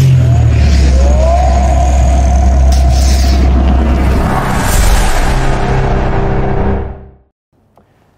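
Loud cinematic logo-intro sound design: a deep sustained rumble with rising whooshes, a sharp burst about three seconds in, then the whole sting fades out about seven seconds in.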